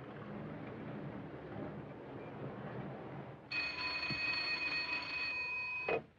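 Desk telephone ringing: one steady ring of about two and a half seconds that starts a little past the middle and cuts off suddenly as it is answered, after low background noise.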